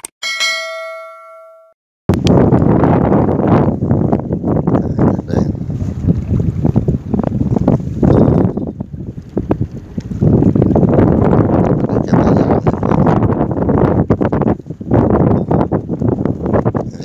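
A bell-like notification chime rings and fades over about a second and a half, then strong wind buffets the microphone in a loud, gusting rush for the rest of the clip.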